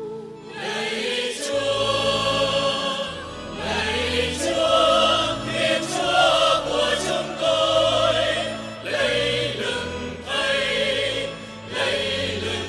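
Background music: a choir singing a slow hymn in phrases a few seconds long, with sustained notes over steady low accompaniment.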